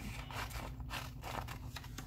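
Scissors cutting through a sheet of printed copy paper, a steady run of short snips, several a second.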